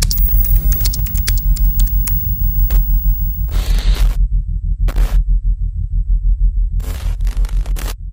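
Logo intro sound effect: a deep, rapidly pulsing bass hum with a quick run of sharp digital clicks in the first couple of seconds, then bursts of static around the middle and again near the end.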